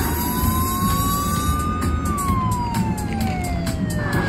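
IGT Hot Hit Pepper Pays slot machine sounding its siren effect for a bonus win: one slow wail that rises for about two seconds, then falls, over steady casino floor noise.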